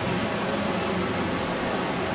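Steady, even hiss of background noise with no distinct event in it.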